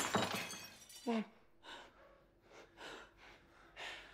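Ragged, heavy breathing in a quiet room, with a short falling whimper about a second in. At the very start, a loud noisy sound dies away.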